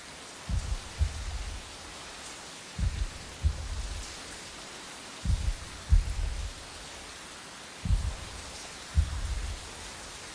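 Heavy rain falling steadily. Deep low thuds cut through it, mostly in pairs about half a second apart, and a pair comes roughly every two and a half seconds.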